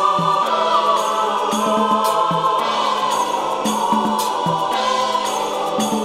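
Music: a choir singing long held chords in a gospel-like passage, with no heavy bass beat under it.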